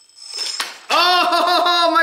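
A man's long, high-pitched laughing exclamation, starting about a second in, after a single sharp knock.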